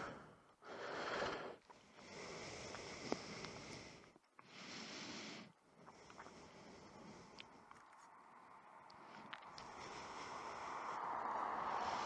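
A car passing on the road: faint tyre and engine noise that rises steadily over the last few seconds as it approaches. Before that there is only faint, patchy background noise.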